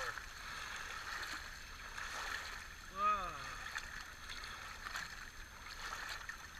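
Shallow water lapping and trickling over the rocks at the shoreline, with small splashes and faint clicks from hands working in the water. A brief voiced 'oh'-like sound about halfway through.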